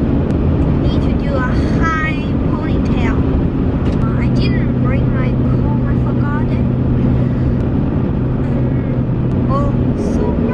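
Road and engine noise inside a moving car's cabin: a steady low rumble with a droning hum, and a few short stretches of a voice over it.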